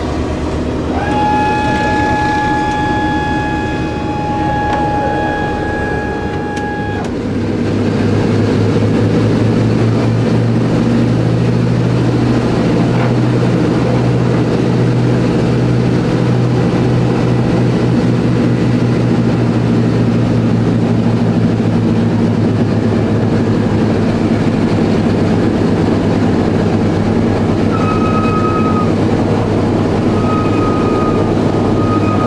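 Four Pratt & Whitney R-1830 radial engines of a B-24 Liberator, heard from inside the fuselage as the bomber moves on the ground; about eight seconds in the engine sound grows louder and deeper, then holds steady. A steady high whine sounds over the engines for the first several seconds.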